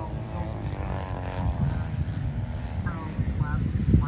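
Twin electric motors and propellers of a large radio-controlled Twin Otter model airplane in flight, heard as an uneven low rumble, with a voice in the background.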